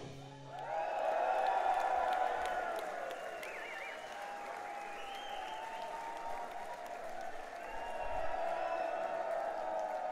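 Rock concert audience applauding and cheering at the end of a song, swelling up about half a second in and carrying on steadily.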